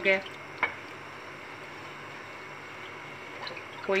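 Wooden spoon stirring a thin, lump-free white sauce of milk and flour in a metal pan as it heats to thicken: soft wet stirring, with one light tap of the spoon about half a second in.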